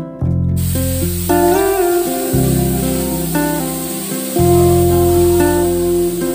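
Compressed-air spray gun hissing steadily as it sprays paint, starting abruptly about half a second in, over background music with deep held bass notes and a melody.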